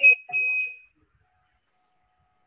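Small electronic buzzer on the Backkeeper posture-correction wearable beeping twice in a high steady tone: a short beep, then one of about half a second, ending within the first second. It sounds as the device is being calibrated.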